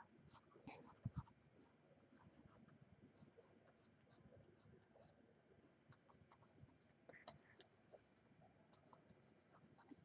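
Near silence with faint, irregular light scratches and ticks of a stylus on a graphics tablet, and two soft knocks about a second in.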